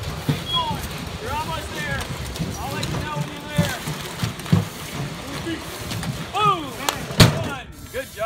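A weighted sled being dragged across asphalt, a steady scraping rumble, with people shouting over it several times and a sharp knock near the end.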